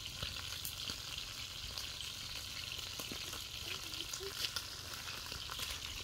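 Chicken and chicken skin frying in hot oil: a steady sizzle with many small crackles and pops.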